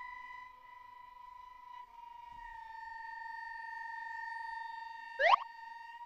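Eerie electronic drone held on one high note, dipping slightly in pitch about two seconds in, with a quick upward-sweeping swish a little after five seconds as the loudest moment.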